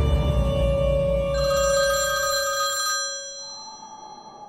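A telephone ringing once, a warbling trill lasting about a second and a half starting just over a second in, over a low music bed that fades out.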